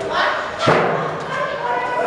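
Voices of a group chattering, with one loud, sharp thump under a second in, an object striking something hard.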